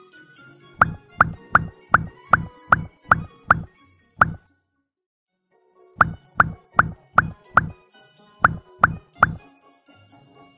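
Light background music with a string of cartoon water-drop 'bloop' sound effects, about three a second. They come in a run of nine, then stop for a second and a half of near silence, and return in runs of five and three.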